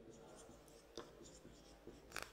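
Faint scratching of a marker writing on a whiteboard in short strokes, with one sharper tick about a second in.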